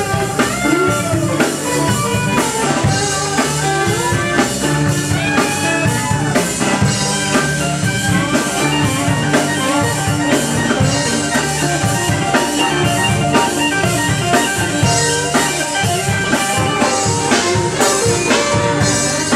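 Live rock band playing an instrumental passage: electric guitar lead lines over rhythm guitars and a drum kit.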